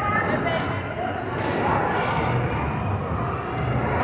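Indistinct voices and chatter from many people, children among them, echoing in a large indoor hall as a steady din.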